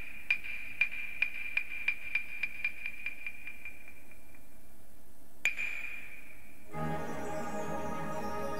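Japanese wooden clappers (hyoshigi) struck in a run of sharp, ringing claps that speed up and fade away, then one louder single clap. Near the end an instrumental introduction begins.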